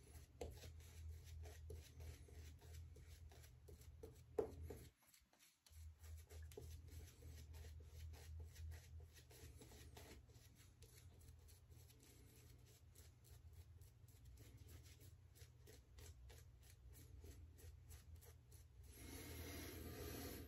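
Faint, crackly swishing of a synthetic shaving brush working lather over the skin of the jaw and neck, with one louder tap about four seconds in.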